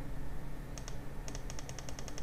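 A rapid run of light computer-key clicks, starting about a second in at roughly eight to ten a second, as a key is tapped repeatedly.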